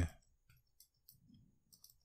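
A few faint, irregular clicks of keys being typed on a computer keyboard.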